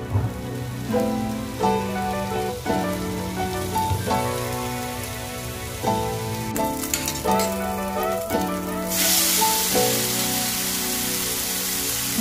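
Background music over diced pork frying in a pan: a faint sizzle that turns into a loud, hissing sizzle about nine seconds in.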